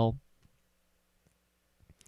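Near silence with a few faint mouse clicks.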